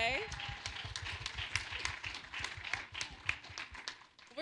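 Congregation applauding: a run of hand claps with a few voices mixed in, fading out near the end.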